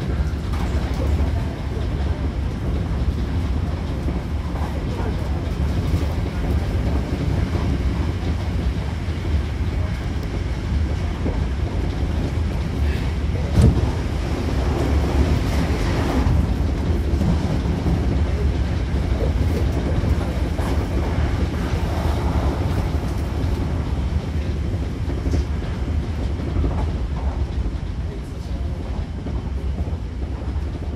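Running noise of a Hankyu train heard from inside the car: a steady low rumble of wheels on the rails. A single sharp knock comes about halfway through.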